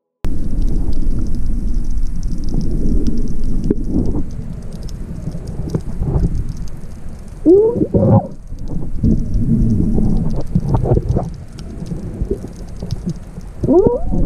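Water noise heard through an underwater camera: a dense low rumble of moving water and bubbles with faint crackling on top. Muffled rising cries cut through it about seven and a half seconds in and again near the end.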